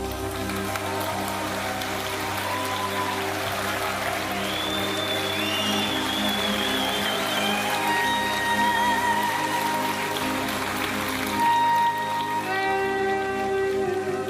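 Neo-progressive rock band playing an instrumental passage live: a high lead melody with bends, then held notes with vibrato, over sustained chords and a steady cymbal-like wash.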